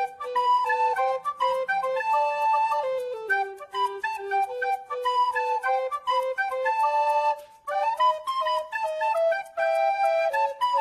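Instrumental background music: a single high melody line moving in short stepping notes.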